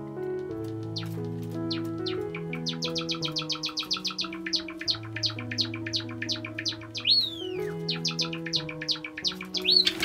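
Java sparrow song: a fast run of short clicking chirps, about ten a second, broken by two drawn-out whistles that rise and then fall, one about seven seconds in and one near the end. Background music plays throughout.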